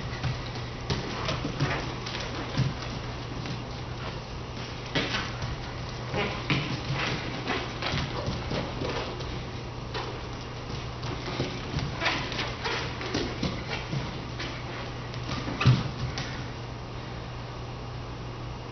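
Bare feet running, stepping and landing on a dance-studio floor: irregular thumps and slaps, the loudest a little before the end, over a steady low hum.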